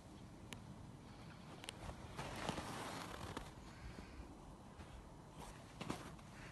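Faint footsteps crunching on packed snow, with a few light clicks and a denser stretch of crunching from about two seconds in.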